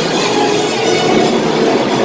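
Loud, steady din of metal bells ringing continuously among a packed crowd, mixed with music.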